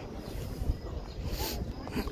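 Low wind rumble on a phone's microphone, with faint voices of people nearby and a brief hiss about one and a half seconds in.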